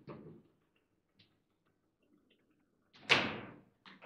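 Table football table in play: a few faint ticks of the ball and rods, then one loud sharp bang about three seconds in that rings off briefly, followed by more light knocks.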